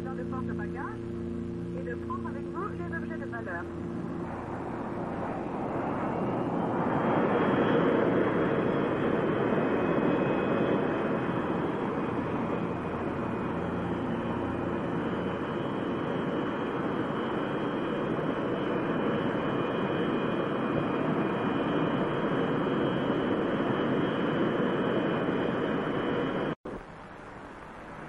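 Jet airliner engine noise: a steady rush that swells over several seconds and then holds loud, cut off abruptly near the end.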